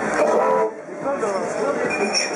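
Crowd chatter: many voices talking over one another at once, with a brief lull near the middle.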